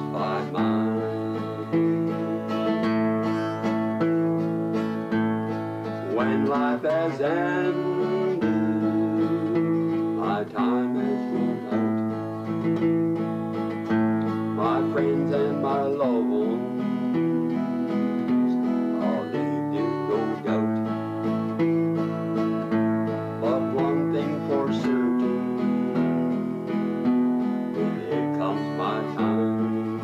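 Acoustic guitar strummed in a steady country rhythm, with a man's singing voice over it at times.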